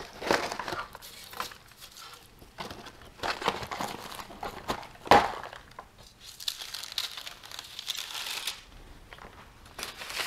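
Foil Mylar bag crinkling and brittle freeze-dried pulled pork crunching as the chunks are pressed into the bag, in irregular rustling bursts with a sharp crackle about five seconds in. A lighter, higher rustle of paper and foil follows.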